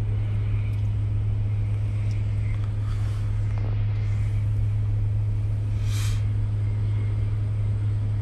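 Steady low drone of an idling vehicle engine, with a faint brief hiss about six seconds in.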